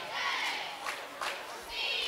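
Crowd in a gymnasium, many voices calling and shouting at once, with a few faint knocks in among them.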